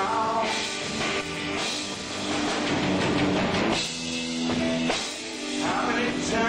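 Live blues band playing: electric guitar over a drum kit, with no vocal line.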